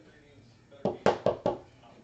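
Four quick knocks in about half a second: a plastic top loader holding a trading card tapped against the table to seat the card.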